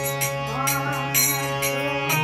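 Devotional temple song: a voice singing over the held, reedy notes of a harmonium, with hand percussion striking about twice a second.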